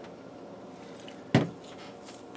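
One sharp knock about a second and a half in: a plastic dye squeeze bottle set down on a hard tabletop. Faint room tone otherwise.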